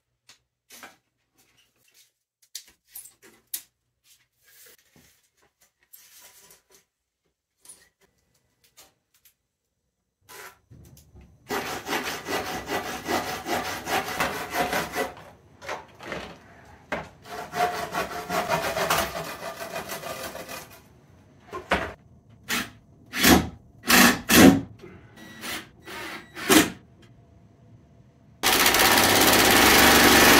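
A wooden 2x4 being sawn in two spells of a few seconds each, after some scattered faint taps. Then several sharp wooden knocks, and near the end a cordless drill runs steadily for a couple of seconds, driving a screw into the board.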